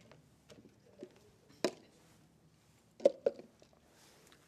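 Mostly quiet room with a few faint, scattered clicks and small handling noises, and one sharper click about halfway through.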